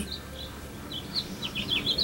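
A small bird chirping in short, high notes, a few at first and then several in quick succession in the second half, over a faint low background hum.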